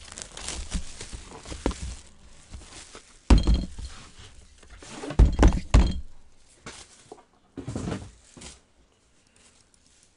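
Handling noise on a tabletop: a series of dull thuds and knocks with some rustling, the loudest a thud about three seconds in and a quick run of three about five seconds in.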